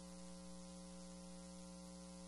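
Faint, steady electrical hum with a stack of even tones over a constant hiss, unchanging throughout. This is line noise on the audio feed while the room is silent.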